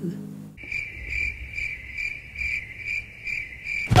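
Cricket chirping sound effect: a steady high trill that pulses about two and a half times a second, starting about half a second in and stopping just before the end.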